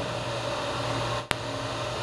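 Steady background hiss and low electrical hum in a small room, broken by one sharp click about a second in.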